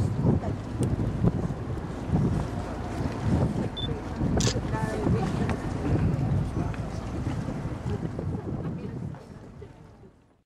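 Wind buffeting the microphone, an uneven gusty rumble, with faint voices in the background; the sound fades out near the end.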